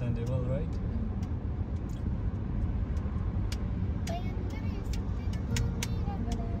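Car driving at motorway speed, heard from inside the cabin: a steady low road and tyre rumble, with scattered light clicks and faint snatches of voice.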